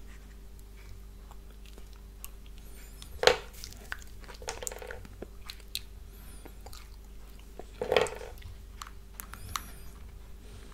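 Wax birthday candles being pulled one by one out of a cupcake's whipped frosting, close to the microphone: small sticky clicks and rustles, with two louder short mouth sounds about three and eight seconds in, over a faint steady hum.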